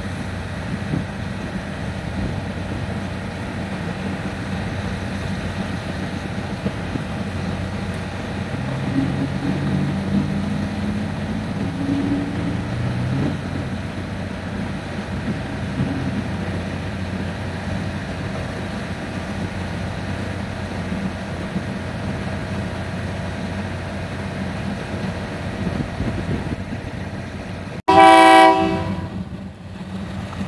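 A diesel railcar idling at the platform with a steady low engine hum. Near the end a loud train horn sounds for about a second and fades.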